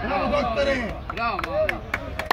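Several voices calling out, with a few short sharp knocks in the second half.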